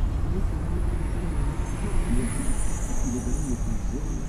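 Street traffic: a bus and cars passing with a steady low engine rumble, under indistinct voices. A thin high whine comes in about halfway through.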